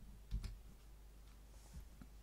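Faint clicks in a quiet room: one about a third of a second in and a softer one near the end, over a low steady hum.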